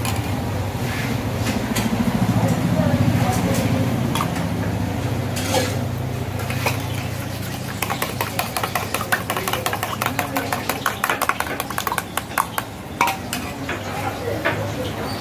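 A spoon stirring a liquid mixture in a steel tumbler, turning into rapid metallic clinking of the spoon against the tumbler's side from about halfway through, over a steady low hum.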